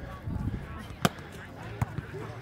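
Two sharp smacks of hands and forearms hitting a volleyball in play, the louder about a second in and another near the end, over faint voices.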